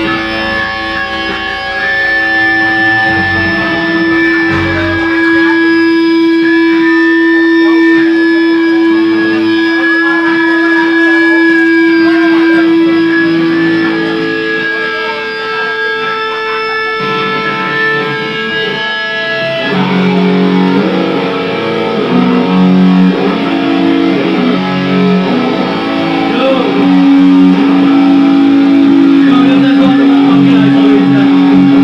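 Distorted electric guitars played live by a hardcore punk band, letting long notes ring. The notes change about halfway through and again a few seconds later, with lower notes coming in.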